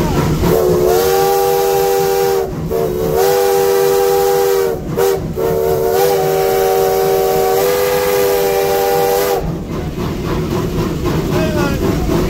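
The chime steam whistle of Virginia & Truckee #29, a 1916 Baldwin steam locomotive, heard from inside the cab in four blasts: long, long, short, long. This is the signal for a road crossing. The locomotive's steady hiss and rumble carries on underneath and continues after the last blast.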